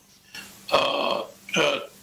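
A man's voice making two short wordless vocal sounds, a longer one and then a brief one, like hesitation noises while waiting.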